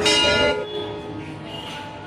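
A bell struck once, its ring fading away over about a second.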